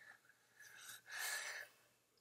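A person breathing out audibly twice, a short breath and then a longer sigh-like exhale.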